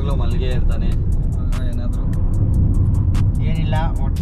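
Steady low road and engine rumble inside a moving car's cabin, under background music with a quick ticking beat and short bits of voice near the start and end.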